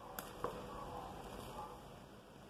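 Two light clicks near the start, then a faint soft sliding sound as thick soap paste pours from an aluminium pot into a plastic basin, pushed along with a spatula.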